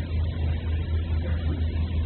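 Steady low hum with a faint even hiss: the background noise of the recording.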